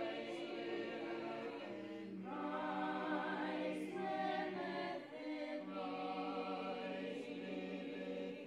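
Mixed group of adult and children's voices singing together, holding notes in long phrases with short breaks between them about two and five seconds in.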